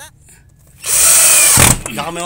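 Power drill running in one burst of about a second, driving a screw through a steel door hinge into the wooden door.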